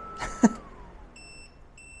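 ALLPOWERS R1500 power station shutting down on overload protection with its AC charger connected: a steady high whine falls in pitch and dies away about half a second in as the output cuts off. About a second in the unit starts its fault alarm, short high beeps, two of them, which go on after. A brief exclamation is the loudest sound, just before the whine drops.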